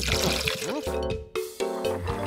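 Cartoon sound effect of cooking oil being poured into a frying pan, a liquid glugging and splashing that stops a little over a second in, over background music.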